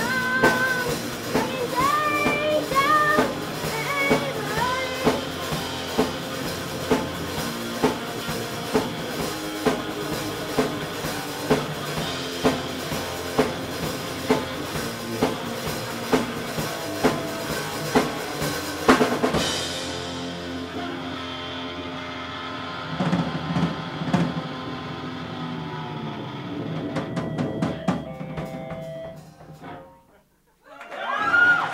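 Live rock band of electric guitars, bass guitar and drum kit playing an instrumental passage on a steady drum beat. About two-thirds through comes one loud crash, after which the chords are left ringing over scattered drum and cymbal hits, and a closing flurry of hits ends the song just before the end.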